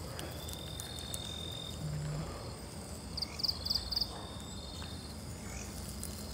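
Night forest ambience of insects and frogs: a thin steady insect trill in the first couple of seconds, a brief low call about two seconds in, and four quick high chirps around three and a half seconds.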